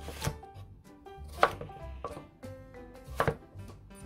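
Chef's knife cutting lengthwise through a cucumber and striking a wooden cutting board: three cuts, the first just after the start, the next about a second and a half in, the last a quick double knock.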